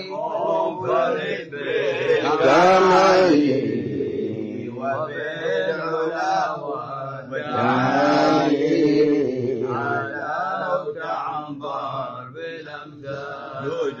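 Male voices chanting Arabic devotional verses in long, drawn-out melodic phrases, with short breaths between the phrases.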